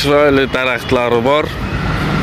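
A man talking for about the first second and a half, over a steady hum of street background noise.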